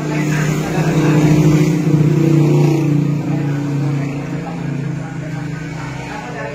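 A motor vehicle's engine running close by, getting louder over the first two seconds or so and then slowly fading.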